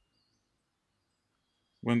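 Near silence: a pause in a man's narration, with his voice starting again near the end.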